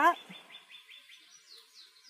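A small bird singing faintly: a quick run of short falling chirps that climb higher near the end.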